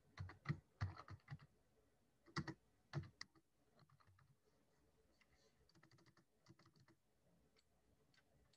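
Typing on a computer keyboard: a quick run of keystrokes in the first three seconds or so, then fainter, scattered key taps.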